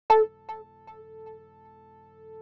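Opening of an electronic remix: a single synthesizer note struck once, then repeating as a fading echo about twice a second.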